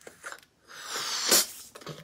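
A person blowing one long breath into a rubber balloon to inflate it, the rush of air growing louder for about a second and then stopping.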